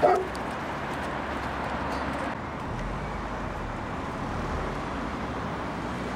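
A dog gives one short, loud yip right at the start, then steady street noise with traffic.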